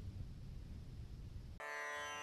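Faint low hum, then about one and a half seconds in a single plucked string note sounds and rings on, opening a piece of instrumental string music.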